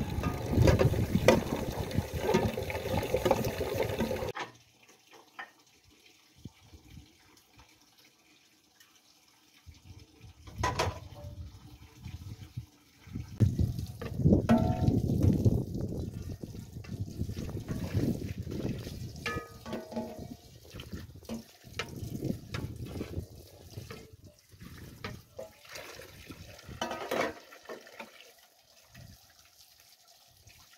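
Water running from an outdoor tap into a metal pot, stopping abruptly after about four seconds. After a lull, irregular splashing and clinking as dishes and a metal tray are rinsed under the tap.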